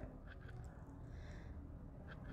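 Quiet room tone with a faint low hum and a couple of faint ticks.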